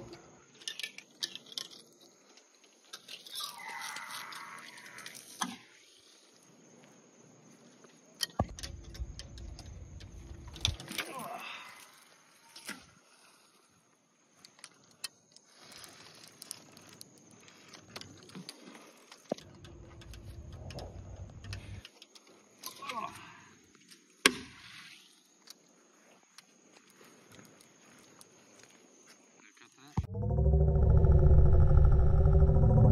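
Handling noise of a Penn Senator 12/0 conventional reel and heavy rod during a cast and retrieve: scattered clicks and metallic rattles, with two low rumbling stretches and one sharp click past the middle.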